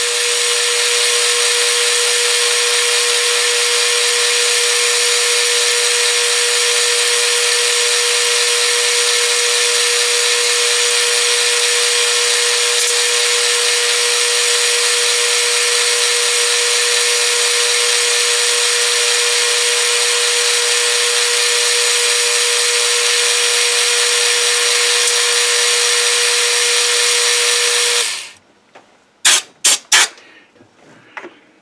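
Metal lathe running in back gear at its slowest speed during a screwcutting pass on a fine thread: a loud, steady whine with one strong tone. It stops suddenly about 28 seconds in, followed by a few short clicks.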